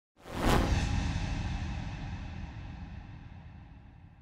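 Logo-intro sound effect: a single whoosh that hits about half a second in and fades away slowly over about three seconds.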